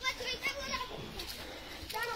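Faint background voices, children among them, talking and calling out in the first second and again near the end.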